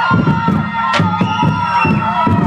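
Drumline playing a steady beat of about four hits a second, under voices holding long sung notes.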